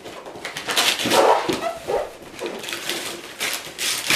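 Wrapping paper and a gift box rustling and crinkling in repeated short bursts as they are tugged and handled, with a few brief strained vocal sounds from the person straining to get the box open.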